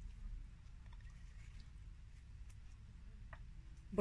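Faint, sparse soft clicks and squishes of a small knife slicing through a tomato held in the hand, over a low steady room hum.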